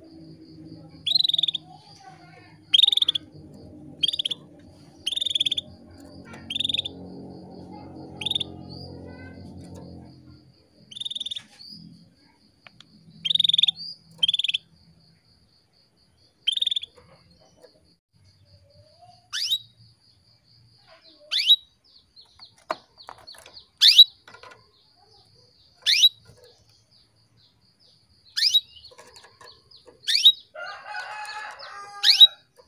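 Female canary calling: short high chirps repeated every second or two, which change after about twenty seconds to sharper calls that slide downward in pitch. This is the female's call that keepers play to rouse male canaries into singing.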